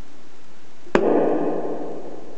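A single sharp percussive slap on an acoustic ukulele about a second in, its strings and body ringing briefly and dying away.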